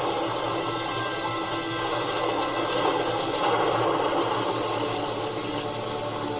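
A television documentary soundtrack played through the TV's speaker and picked up by the room microphone: a dense, steady mix of music and effects with no narration.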